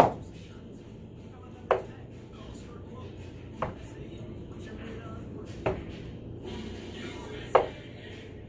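Darts striking a dartboard: five short, sharp hits about two seconds apart, the first the loudest.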